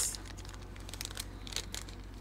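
A small paper sample bag being handled and opened by hand: soft, irregular paper crinkles and light clicks.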